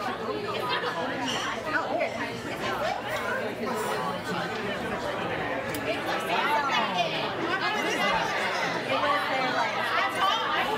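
Restaurant dining-room chatter: many voices talking at once, overlapping, with a brief spoken 'thank you' at the start.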